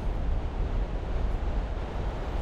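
Wind rumbling and buffeting on the microphone, with an even hiss of surf behind it.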